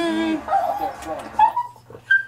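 A small dog whining: one held note at the start, then a few shorter ones.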